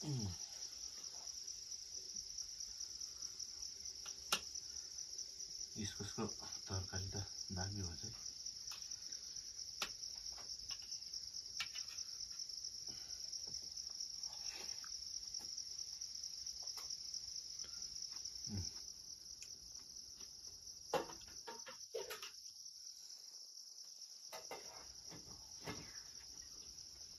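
Steady, high-pitched chorus of insects, with a few sharp clicks scattered through it.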